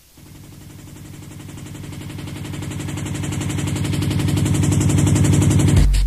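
Drum and bass DJ mix: a rapid roll of repeated hits starts from quiet and builds steadily louder for about six seconds. The full beat with heavy bass drops in right at the end.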